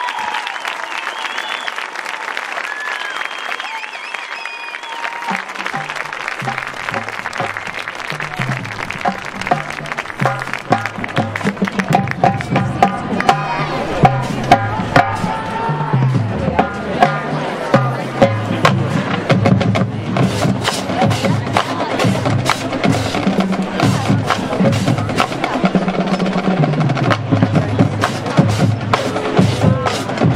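The end of crowd applause, then about six seconds in a marching drumline starts a cadence. Sharp stick and rim clicks run over tuned bass drums playing stepping runs, and it grows louder.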